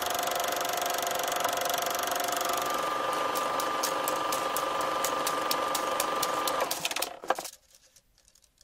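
Old film projector running: a steady mechanical whir with crackling clicks that begin about three seconds in, ending with a knock about seven seconds in.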